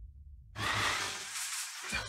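A low hum, then a sudden breathy hiss that starts about half a second in and keeps going.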